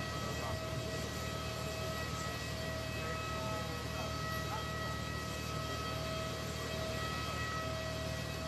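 Parked jet aircraft running on the apron: a steady whine over a low rumble.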